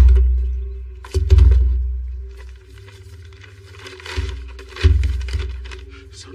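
Tense film score: deep booming hits over a sustained low drone. The first comes about a second in and two more land close together past the four-second mark, each fading slowly.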